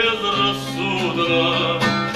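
A man singing to his own classical guitar accompaniment.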